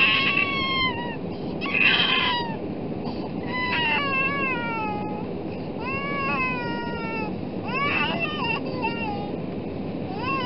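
An infant crying in the airliner cabin, a string of high wavering wails coming every second or two, over the steady rumble of the jet cabin during the climb.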